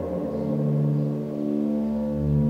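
Sylenth1 software synthesizer playing an atmosphere/FX preset: a low, sustained droning pad of held tones, its lowest note stepping up in pitch about half a second in.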